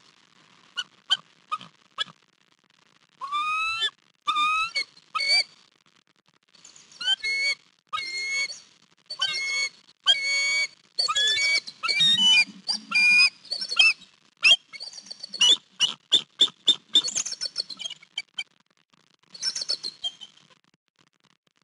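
Bald eagle calling: a long run of short, high-pitched chirping notes in bursts with brief gaps, after a few single notes at the start.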